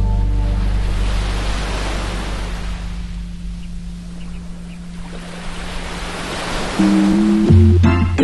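Surf from small waves washing up a sandy beach, swelling and ebbing with a lull about halfway. A low held bass note from the music fades out in the first half, and sustained keyboard chords come back in near the end.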